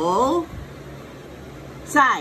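A woman's voice drawing out a Mandarin word whose pitch dips and then rises, ending about half a second in, then a short word with a falling pitch near the end. A low steady hum fills the gap between.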